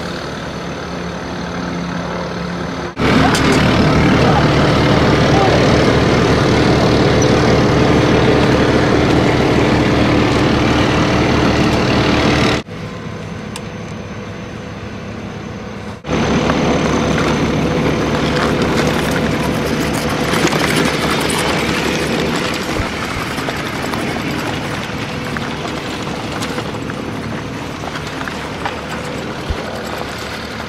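Armoured military vehicle's diesel engine running steadily, heard in several cut-together stretches. It is loudest for about ten seconds after an abrupt jump in level early on, then drops sharply and comes back up a few seconds later.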